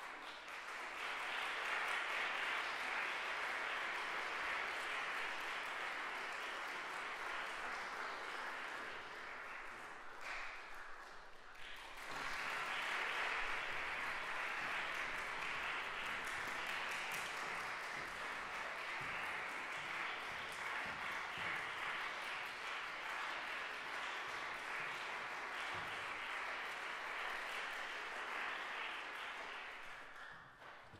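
Audience applauding steadily; the applause thins out briefly about ten seconds in, then picks up again.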